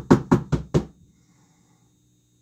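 A bath-bomb mould rapped against a worktop: a quick run of sharp knocks, about four a second, that stops within the first second.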